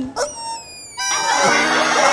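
Rubber chicken squeeze toy squeezed: a brief squeak, then about a second in a long, shrill, wavering squawk that keeps going.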